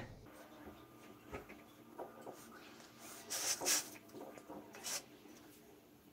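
Faint rustling and scraping of hands pressing and moving loose potting soil around seedlings in a pot, with a few short soft brushes, the loudest a little after three seconds in and another near five seconds.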